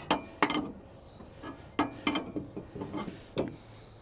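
Metal clinks and knocks from hands and tools working on a rotary cutter's PTO driveshaft: about five sharp ones, spread irregularly, with quieter handling noise between them.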